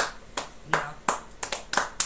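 Two people clapping their hands, the claps uneven and out of step with each other.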